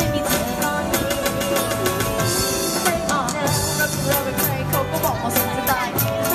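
Live band playing a pop song: girls singing into microphones over electric guitars, keyboard and a steady beat.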